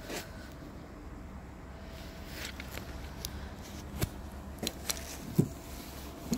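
Low steady rumble with a scattered series of short light clicks and taps, mostly in the second half, from a handheld phone being moved about.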